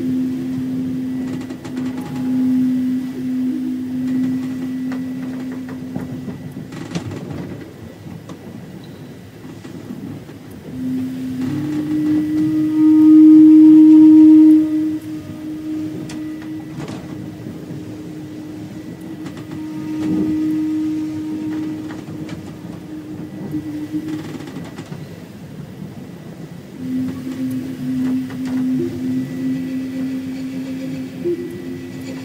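Native American-style flute playing slow, long-held low notes: one note for the first several seconds, a pause, then a slightly higher note that swells in and is held for a long stretch, loudest a little before the middle, and a return to the lower note near the end. A steady rumbling noise with occasional clicks runs underneath.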